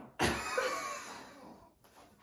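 A man's loud, breathy vocal outburst of strain during a dumbbell exercise, fading out over about a second and a half.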